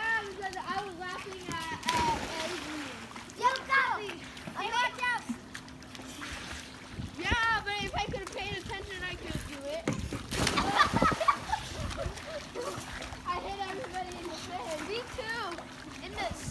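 Children's high voices shouting and calling out over water splashing in a swimming pool, with the loudest noisy splash about ten seconds in.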